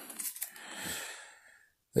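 Small cardboard knife box being handled and slid open, a soft rustle lasting about a second.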